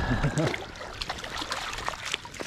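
Stream water splashing and trickling around a landing net held in the current, with a fish splashing at the surface and small sharp splashes throughout. A brief voice, a laugh trailing off, comes in the first half second.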